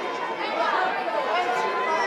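Chatter of many voices talking over one another, the press photographers on a red-carpet line.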